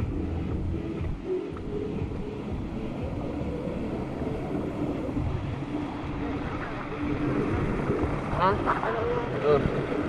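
Steady rush of water running down a water slide's channel.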